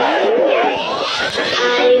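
Pitch-sweep sound effect in a song playing from a phone video: a tone slides smoothly up over about a second and a half, crossed at the start by a falling one, before sung and played notes come back in near the end.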